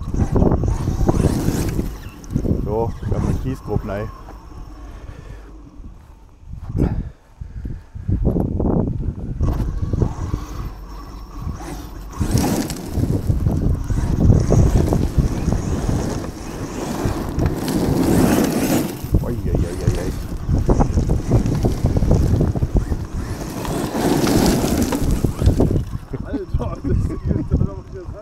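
Onboard-camera sound of an ARRMA Kraton 8S RC truck driving over gravel: a dense, rumbling noise of tyres, chassis and wind buffeting the microphone, which comes in loudly about eight seconds in after a quieter stretch.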